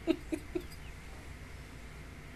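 The tail of a woman's laugh: a few quick, fading laugh pulses in the first half-second.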